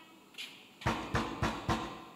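Four knocks, as on a door, about a third of a second apart, each with a deep thud.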